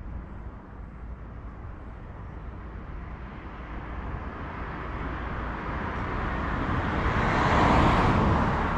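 A vehicle passing by: a steady rushing sound that grows gradually louder and is loudest near the end.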